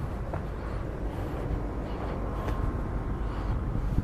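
Outdoor street ambience: a steady low rumble with a faint thin tone about halfway through.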